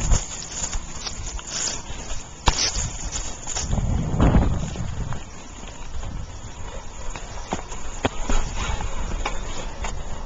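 Stingray bicycle being ridden, with wind rumbling on the microphone and irregular rattling clicks from the ride, one sharp click about two and a half seconds in and a loud gust of wind rumble about four seconds in.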